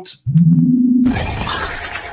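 Outro sound effect: a low electronic tone begins about a quarter second in, then a loud crash like shattering glass breaks in about a second in and fades away.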